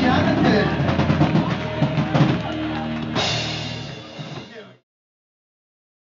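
Live rock band music with a drum kit, under a bar crowd cheering and clapping. A sharp crash comes about three seconds in, then everything fades and cuts off to silence about five seconds in.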